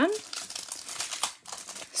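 Clear plastic wrapper around a trading card crinkling irregularly as it is handled in the fingers.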